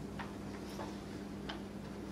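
A few faint, irregular clicks and taps as notes are handled at a wooden lectern, over a steady low electrical hum.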